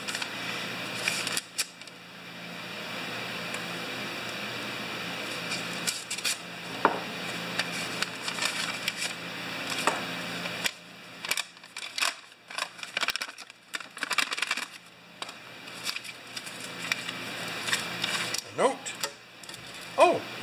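Paper envelope being unfolded and opened by hand on a workbench: irregular paper rustling and crinkling with scattered light taps and clicks, and a small plastic packet handled near the end.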